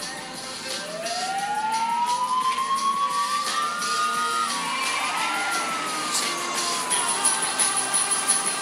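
Police sirens wailing, starting about a second in: several overlapping tones that rise and fall, growing louder, over background music.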